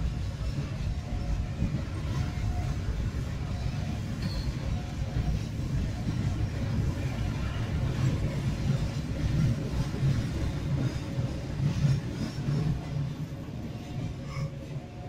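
Indonesian passenger train's coaches rolling past on the adjacent track, a steady low rumble of wheels on rails that lasts until the last coach goes by.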